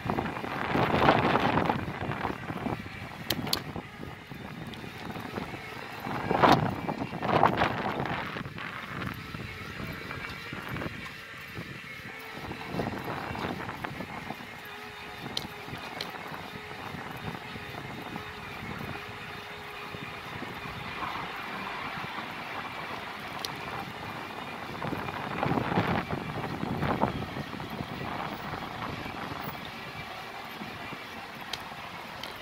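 Wind buffeting the microphone over the rolling noise of a knobby-tyred bicycle on a paved street. It swells in gusts near the start, around six to eight seconds in and near the end, with a faint steady hum in the middle.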